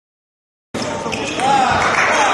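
Silence, then about three quarters of a second in the sound of a table tennis hall cuts in suddenly: a celluloid ball being struck and bouncing on the table amid the chatter of a busy hall.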